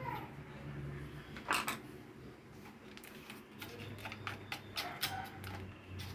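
Quiet, scattered clicks and knocks of a pedestal fan's plastic blade and hub being handled as they are taken off the motor shaft.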